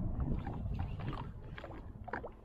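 Low rumble of water and wind around the hull of a drifting jet ski, with scattered light clicks and ticks as a spinning reel is wound against a hooked fish.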